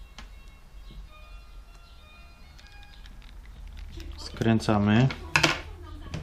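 Small clicks of a precision screwdriver and tiny screws being worked into an opened tablet, over faint music. About four and a half seconds in, a person's voice is heard briefly and is the loudest sound, followed by a couple of sharp clicks.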